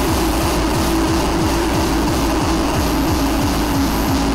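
Electronic hardcore/drum-and-bass mix music: a dense, noisy passage with a held droning tone over a fast run of low drum hits, about five a second.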